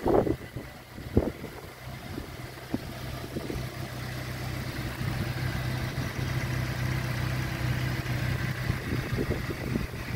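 A vehicle engine running at low, steady revs: a low hum that swells over several seconds and fades out near the end. Two sharp knocks come in the first second or so.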